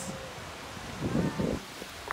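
Steady wind buffeting the microphone over faint surf on a rocky shore, with a short cluster of low scuffing thuds about a second in.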